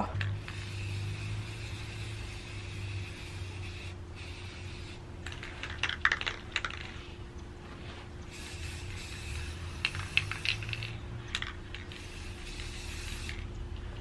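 Aerosol spray-paint can hissing in long sprays with a few short breaks, and the can's mixing ball rattling in clicking bursts about six and ten seconds in. A low rumble of wind on the microphone runs underneath.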